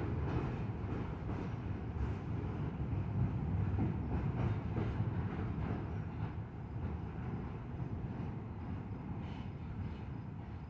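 Double-stack intermodal freight cars rolling across a steel truss railroad bridge: a steady low rumble of wheels on rail with faint scattered clicks, growing slightly quieter in the second half as the end of the train passes.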